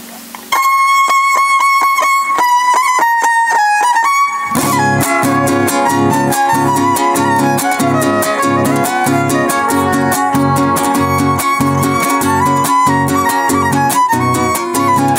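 A huasteco trio playing a son huasteco: the violin starts alone about half a second in, then the jarana and huapanguera come in with rhythmic strumming about four seconds later under the violin melody.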